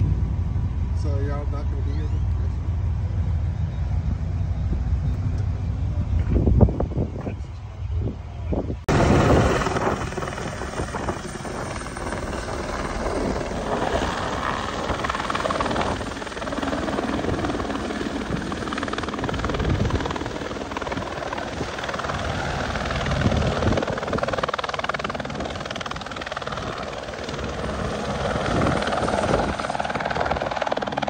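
Helicopter flying low overhead: the rotor and turbine make a dense, pulsing noise that rises and falls as it passes, starting abruptly about nine seconds in. Before that, a low rumble.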